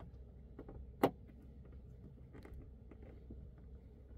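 A sharp plastic click about a second in as the side indicator lens is pressed home in its fender opening, followed by a few faint ticks of fingers on the lens, over a low steady background rumble.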